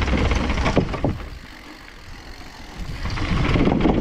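Mountain bike riding downhill, heard from the rider's camera: tyres rumbling and knocking over wooden boardwalk planks with wind on the microphone. The noise drops for about a second in the middle, then tyre and wind noise rise again as the bike rolls onto dirt.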